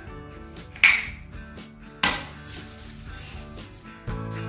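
A hand-held party popper going off with a sharp pop about a second in, followed by a second, softer burst at about two seconds, over background music.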